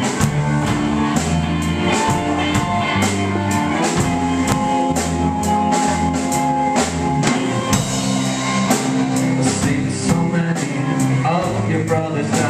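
A small rock band playing live: electric guitar and guitars over a drum kit, with cymbal and drum hits keeping a steady beat.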